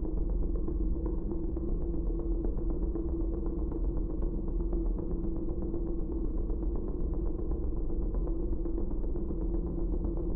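A low, steady droning rumble with one held tone above it, unchanging throughout, an ominous soundtrack drone.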